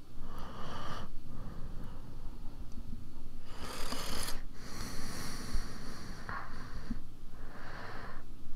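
A man breathing close to a microphone: a series of slow, hissy breaths in and out, about one every second or two, the strongest a little past the middle, with a couple of faint clicks.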